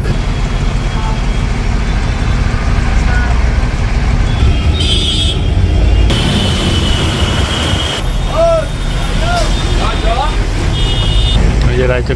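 Diesel engine of a Tata LPO 1618 route bus running under way in traffic, a steady low rumble heard from inside the driver's cab.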